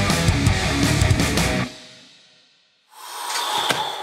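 Rock intro music with drums and electric guitar, cutting off about one and a half seconds in and dying away to a brief silence. The room sound then comes back with a knock near the end.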